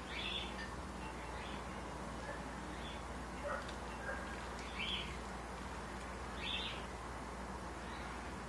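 Faint bird chirps: short, high calls every second or so, over a low steady hum.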